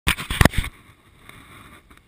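A quick cluster of about five loud knocks and rubs in the first half-second: handling noise from a gloved hand on a handlebar-mounted camera. A faint steady hum follows.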